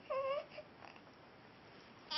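Two-week-old baby letting out one short cry of about a third of a second, its pitch rising slightly and then falling.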